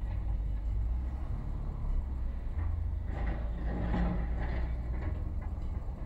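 Low, steady rumble of a car's engine and tyres heard from inside the cabin as the car drives slowly. A brief, fainter higher-pitched noise joins it about three seconds in.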